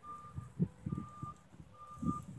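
A vehicle's reversing alarm beeping faintly, a single steady high tone repeating a little under once a second, with soft low thuds alongside.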